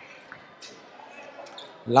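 A few faint thuds of a handball bouncing on a sports-hall court, over low hall ambience, with a man's commentary voice starting near the end.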